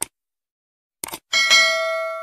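Subscribe-button sound effect: a short mouse click at the start and two quick clicks about a second in, then a bell chime that rings on with several steady tones, slowly fading.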